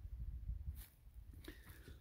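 Quiet background with a faint low rumble and a few soft ticks: the movement and handling noise of a person walking with a handheld camera.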